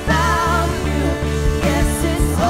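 Live worship band playing a praise song: women singing into microphones over electric guitar, bass and drums.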